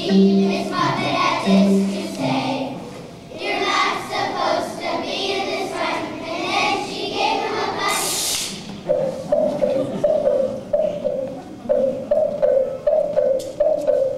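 A choir of second-grade children singing a song. About eight seconds in there is a brief loud hiss, and after it the song moves to short notes repeated on about one pitch, roughly two a second.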